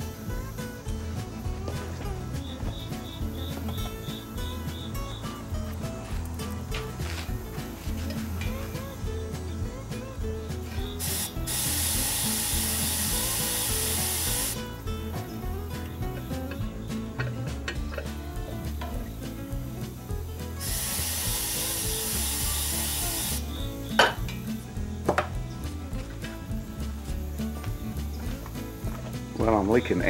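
Compressed air from an air-hose nozzle hissing in two blasts of about three seconds each, blown into the valve of a pressure-cooker lid at 15 psi; the weighted valve does not lift. Two sharp clicks follow the second blast, over steady background music.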